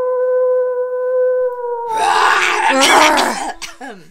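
A voice holds one steady, high note for about two seconds, then breaks into a rough fit of coughing that lasts until near the end.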